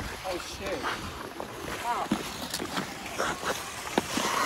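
Ice skate blades scraping and gliding over rink ice, with faint voices of other skaters and a few short clicks.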